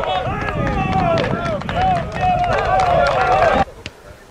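Several men's voices shouting and calling out at once, overlapping one another, over a low rumble. Everything cuts off abruptly near the end.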